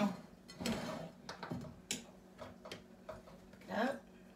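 A few light clicks and taps of a utensil against a mixing bowl while cake batter is being poured into a baking dish, with brief speech.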